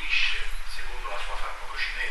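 A man lecturing in Italian, his words indistinct, over a steady low hum.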